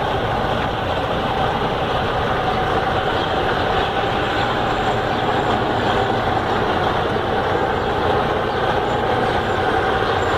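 Freightliner Cascadia semi truck's diesel engine idling steadily, a close, noisy rumble with a faint steady tone above it.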